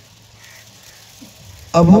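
A pause in a man's speech into a microphone, with only a faint steady hiss, then his voice starts again loudly near the end.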